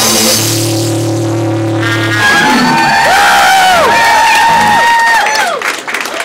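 Rock band playing live and loud: a held low chord, then high notes that bend up and down over it. The music thins out and grows quieter near the end.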